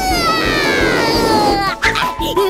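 A cartoon bunny's long cry falling in pitch as it flies through the air over music, cut off by a short knock as it lands near the end.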